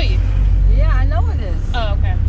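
Low, steady rumble of a car driving along a road, heard from inside the cabin, with a person's voice over it about halfway through and again briefly near the end.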